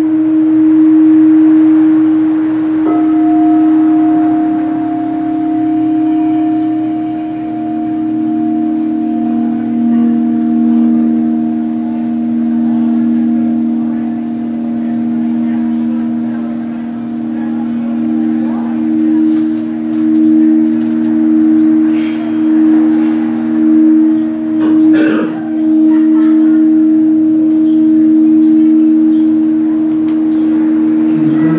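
Singing bowls sounding long, steady, overlapping tones: a higher tone joins about three seconds in and a lower one around eight seconds, and the tones pulse in a slow wobble midway before settling. A single knock near the end.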